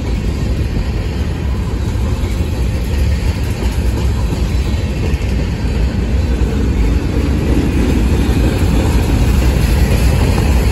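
Cars of a mixed freight (manifest) train, covered hoppers and a boxcar, rolling past close by: a loud, steady rumble of steel wheels on the rails.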